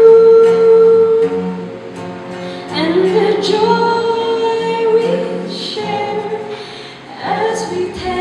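A woman singing solo, holding long notes. Her voice slides up into a new sustained phrase about three seconds in and again near the end.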